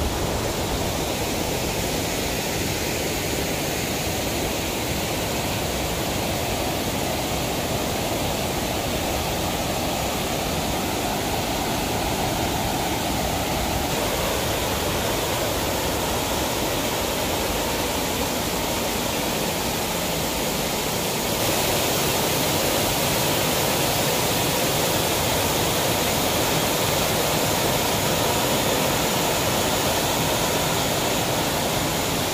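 Steady rushing of water falling over a dam's stepped weir. The sound shifts abruptly about halfway through and grows a little louder about two-thirds of the way in.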